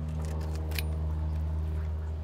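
A steady low hum with several even overtones, and one short sharp click about three quarters of a second in.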